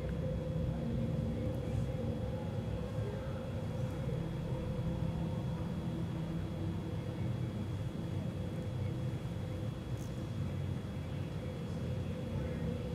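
Steady low rumble with a constant hum, from the onboard camera audio of a Falcon 9 first stage during its flight.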